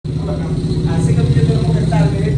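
A motor engine running steadily with a low rumble, with voices talking over it from about a second in.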